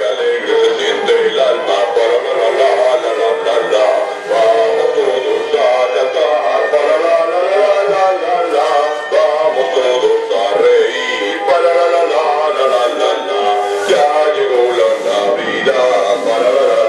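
Electronically processed, synthetic-sounding male singing voice with music, its pitch wavering and bending without a break.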